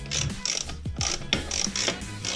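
Socket ratchet wrench clicking in quick repeated strokes as it unscrews a scooter's rear wheel nuts, about three or four clicks a second.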